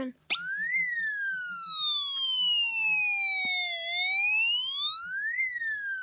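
Snap Circuits alarm IC sounding a firefighter siren through the kit's small speaker. A click as it is switched on, then a thin electronic wail that quickly rises, glides slowly down for about three seconds, rises again for about a second and a half and starts falling once more near the end. It does not sound completely like a siren.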